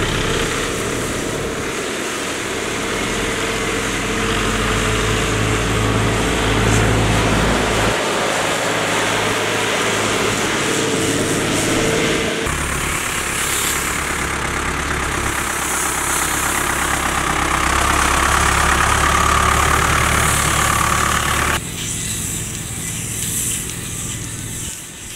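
Diesel farm tractor engines running steadily as a tractor and then its towed baling machinery pass close by; the sound changes abruptly about halfway through, with more hiss from the machinery, and drops suddenly in level near the end.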